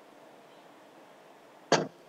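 A single short, sharp knock near the end, over faint room tone.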